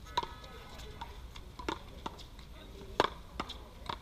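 Paddleball rally: solid paddles smacking the rubber ball and the ball striking the concrete wall, several sharp smacks with the loudest about three seconds in.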